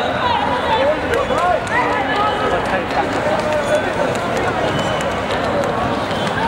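Several people's voices on a football court, players and onlookers calling and talking over one another, with a few faint clicks.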